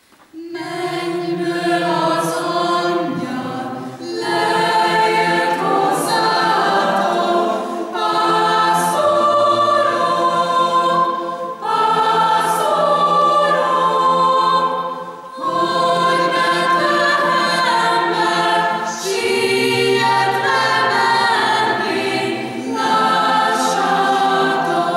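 Mixed choir of men's and women's voices singing, coming in together about half a second in and carrying on in sustained chordal phrases with short breaks for breath between them.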